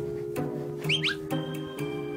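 Light background music with a few short whistle-like chirps about a second in, a sound effect laid over the edit.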